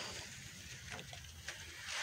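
A quiet pause: faint, steady background hiss with one light tick about one and a half seconds in.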